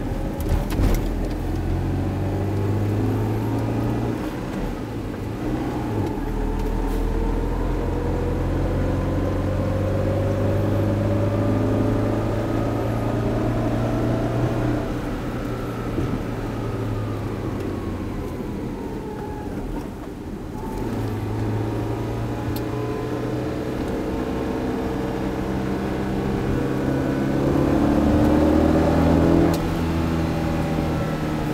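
A Tata Nano's 624 cc two-cylinder petrol engine heard from inside the cabin while driving slowly, its pitch rising and falling several times as it speeds up and eases off, over tyre and road noise. It is loudest near the end, with a couple of knocks about a second in.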